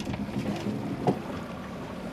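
Steady low hum of a fishing boat's outboard motor under wind noise on the microphone and choppy water, with one short sound about a second in.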